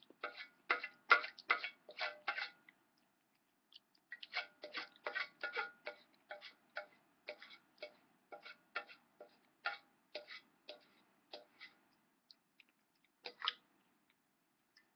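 A string of light, irregular clicks and taps, about two or three a second, with a short pause a few seconds in and a last pair near the end.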